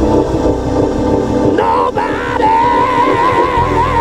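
Live gospel band of keyboards, drums, bass and guitar playing, and about one and a half seconds in a male singer comes in on a long held high note with vibrato.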